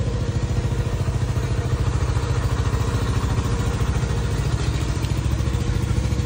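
An engine idling steadily nearby, a low, evenly pulsing rumble.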